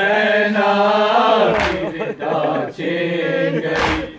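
Men's voices chanting a noha, a Shia lament in Urdu: a lead reciter sings long, held, wavering lines with the group joining in. A dull thump cuts in twice, about two seconds apart.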